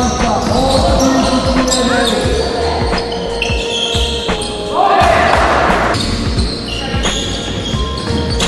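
A basketball bouncing on a gym floor amid sneaker squeaks and players' shouts, echoing in a large sports hall.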